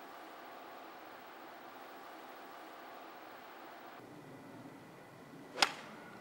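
Faint steady background hum, then one sharp, short crack about five and a half seconds in: a golf club striking the ball.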